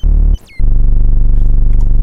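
A synthesized buzzing tone from Bitwig's Parseq-8 step modulator run at audio rate on a DC Offset device, its stepped waveform turned into sound. A short blip comes first, then from about half a second in a loud, steady, low buzz rich in overtones.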